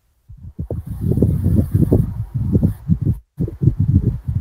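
Loud, muffled rubbing and bumping of a phone's microphone as the phone is handled, with short irregular pulses and a brief break about three seconds in.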